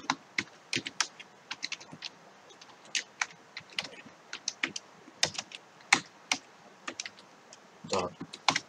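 Typing on a computer keyboard: irregular single keystrokes, a few a second, with short pauses between bursts.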